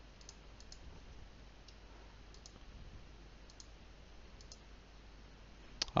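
Faint computer mouse clicks, about six of them, most heard as quick press-and-release pairs, over a low steady hum.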